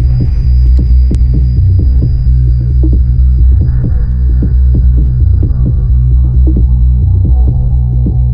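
Electronic music: a loud sustained bass carries quick percussive ticks at about four or five a second, with faint high held tones above.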